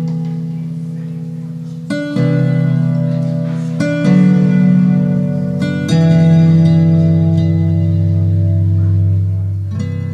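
Kanklės, the Lithuanian plucked zither, playing a slow instrumental introduction: a new chord is plucked roughly every two seconds and left to ring and fade.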